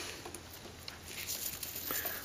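Wet brass clock chain shifting in a gloved hand: a faint rustle of links, with a few small clicks.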